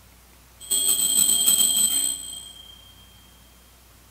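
Altar bell rung for about a second and a half, starting about half a second in, with its high ringing tones dying away over the following second: the bell that marks the elevation of the chalice after the consecration.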